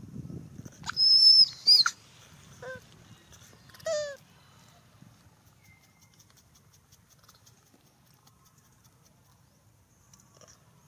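Infant long-tailed macaque calling: a loud, high-pitched squeal about a second in, a second short squeal right after, then two shorter falling coos about three and four seconds in. The rest is quiet apart from a faint low rumble.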